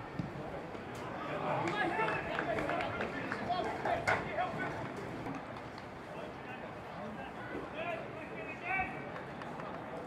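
Men's shouts and calls across a football pitch during an amateur match, scattered over a steady outdoor background, with a couple of sharp knocks about a second in and again near the middle.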